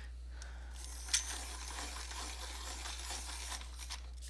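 A triangular Giorgione coloured pencil being turned in a small Deli hand sharpener: a dry scraping of wood and soft lead lasting about three seconds, with a sharp click about a second in.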